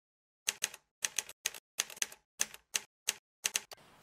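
Typewriter keystrokes laid over a title card: a string of sharp clacks, several a second at an uneven pace, starting about half a second in after dead silence.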